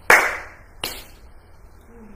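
Two hand claps about three-quarters of a second apart, the first louder.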